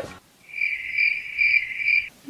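Cricket chirping sound effect, a steady high trill that starts about half a second in and cuts off abruptly: the comic 'crickets' cue for an awkward silence after a joke.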